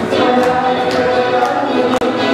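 A group of voices singing a folk song to accordion and strummed small-guitar accompaniment, with guests clapping along in rhythm.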